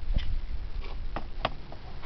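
Sig pistol being handled as its chamber is cleared, giving a few sharp metallic clicks from the slide and action.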